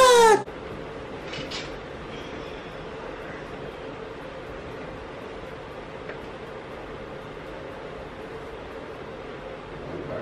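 A short burst of loud, high, falling laughter in the first half second, then a steady even hiss with a faint low hum.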